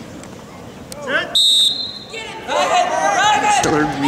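Spectators yelling and shouting in an arena crowd, with one short, loud, high whistle blast about a second and a half in.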